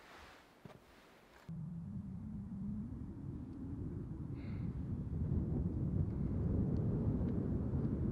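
Wind buffeting the microphone: a low, even rumble that starts suddenly about a second and a half in and slowly grows louder.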